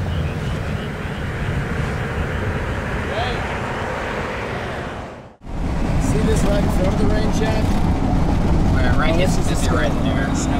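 Steady rumble of a vehicle running, with indistinct voices over it. The sound cuts out for an instant about halfway through, then resumes.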